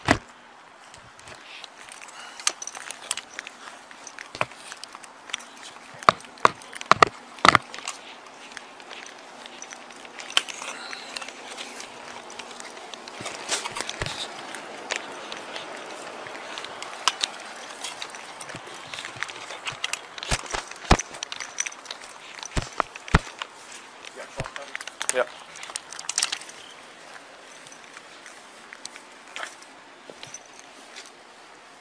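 Footsteps and the knocking and rustling of gear against a chest-worn body camera as its wearer moves, with sharp knocks scattered throughout and a cluster of loud ones about six to eight seconds in.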